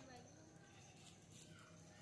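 Near silence: faint outdoor background, with no distinct sound.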